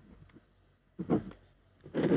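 Ballpoint pen writing on white paper on a desk: a pause, one short scratchy stroke about a second in, then writing picks up again near the end.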